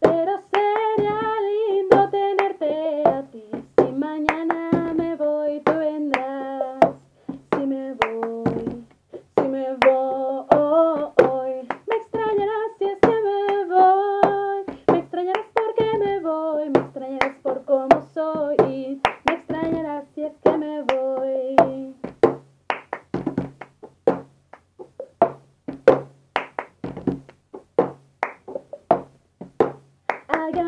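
A woman singing a verse and chorus in Spanish, keeping the beat with the cup game: claps and a cup tapped, flipped and struck on a wooden table. For about the last eight seconds the singing stops and only the clapping and cup-on-table rhythm goes on.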